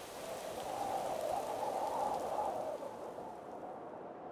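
A soft, even, rain-like hiss that swells slightly in the middle and fades toward the end.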